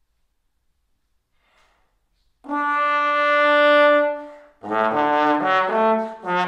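Solo trombone: a faint breath, then one long held note starting about two and a half seconds in, a brief break, and a phrase of shorter, moving notes.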